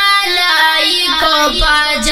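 A boy singing a Pashto naat, holding long notes that step and slide between pitches.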